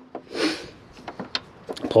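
Rubber plug being worked out of a Detroit Diesel Series 60 valve cover bolt hole: a short rubbing scrape about half a second in, then a few light clicks.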